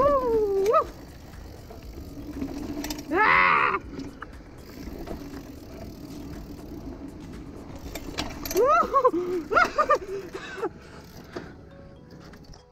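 Mountain bike rolling fast down a dirt forest singletrack: steady tyre and ride noise, with short wordless voice sounds near the start, about three seconds in (the loudest) and again around nine to ten seconds in.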